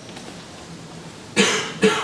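A person coughing twice in quick succession, about half a second apart, near the end.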